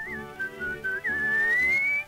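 Whistled refrain of a 1932 dance-band record, a single clear whistled melody over the orchestra's rhythmic accompaniment. A few short notes and turns, then one long upward slide, the loudest part, near the end.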